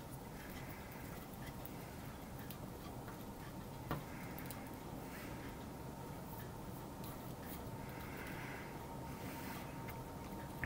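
Quiet workshop room tone with faint small clicks of wooden pegs being handled and pressed into glued holes in a wooden strip, and one sharper click about four seconds in.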